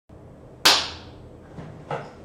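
A single sharp smack, like a hand clap or slap, with a short decaying room echo, then a fainter knock near the end.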